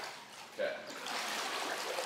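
Water splashing as a swimmer pushes off and starts swimming in a small pool: a rushing splash that builds about a second in and eases off near the end.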